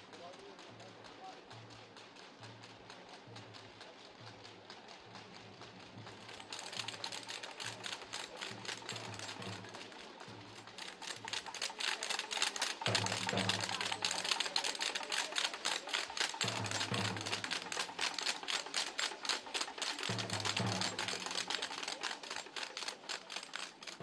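Percussion: a slow, regular low beat about every two-thirds of a second. About six seconds in, a rapid, even clicking rattle joins it, grows louder and fades near the end.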